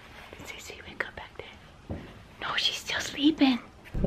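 Quiet whispered voices and soft breathy vocal sounds, with a couple of light clicks about a second in.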